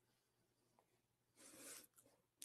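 Near silence: room tone, with one brief soft rustle lasting about half a second, midway through.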